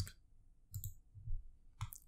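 A few faint computer mouse clicks, the clearest a little under a second in and another near the end.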